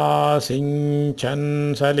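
A man chanting Sanskrit verse in traditional recitation style (pārāyaṇa), held mostly on one steady note with short breaks between phrases.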